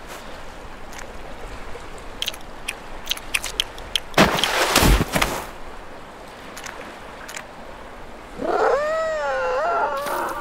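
Cartoon seal sound effects over a light wash of sea: a run of small pats, then a heavier sliding flop ending in a low thud about five seconds in. Near the end comes a seal character's whining vocal sound, its pitch wavering up and down.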